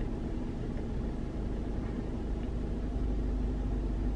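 Car engine idling steadily, heard from inside the cabin as a low, even hum.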